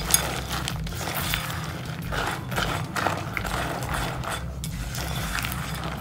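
A silicone spatula folding chopped candied pecans through a syrupy filling in a mixing bowl: irregular scraping and small clicks of nuts against the bowl, over a steady low hum.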